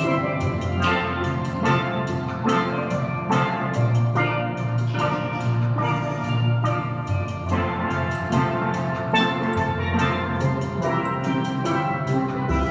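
Steel pan band playing a tune, a quick run of ringing pan notes struck with mallets over sustained low bass notes.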